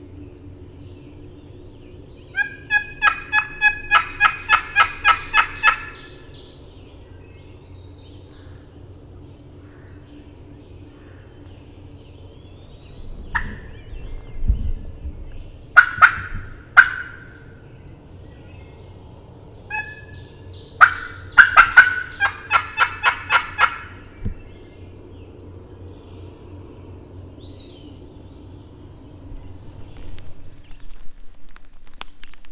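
Wild turkey calling: two long runs of evenly spaced, ringing yelps, about four a second, one early and one past the middle, with a few sharp, loud single notes between them.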